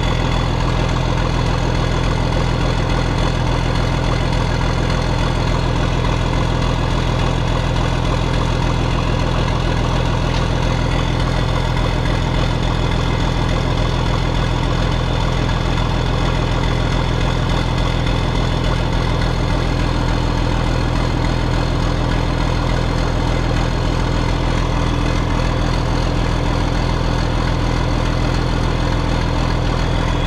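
John Deere 4640 tractor's six-cylinder diesel engine idling steadily, heard from inside the cab.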